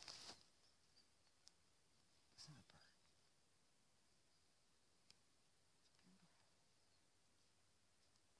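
Near silence outdoors, with a brief faint murmur of a voice about two and a half seconds in and a couple of tiny clicks.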